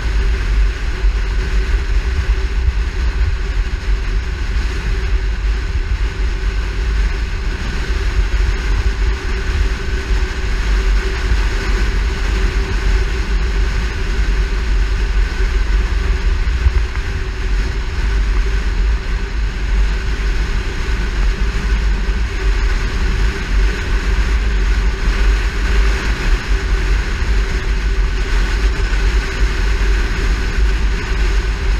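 Steady wind buffeting on a microphone mounted on the hood of a moving car, over the car's constant road and engine hum.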